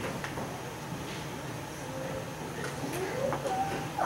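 Faint clicks and rustles of a head-worn wireless microphone being handled and adjusted on its wearer while it has been cutting out, with faint voices murmuring in the room.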